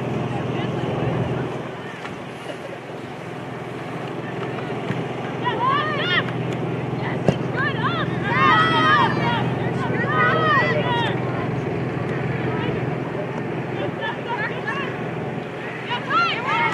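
Shouts and calls from soccer players and the sideline, clustered from about five to eleven seconds in, over a steady low background hum. There is a single sharp knock about seven seconds in.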